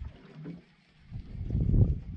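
Low rumble of wind and sea on a small open boat, dying down and then swelling again near the end.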